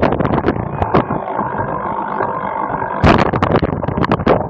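Cyclocross bike rattling and clattering over bumpy grass, with a smoother, steadier stretch from about one second in until about three seconds in, when the rattling resumes.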